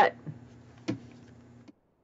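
A light click while a fabric-covered art journal is handled, over a faint low hum. The sound then cuts to dead silence near the end.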